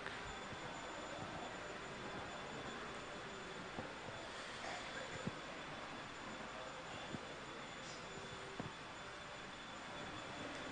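Faint room tone: a steady hiss with a thin, high, steady whine, and a few soft scattered knocks.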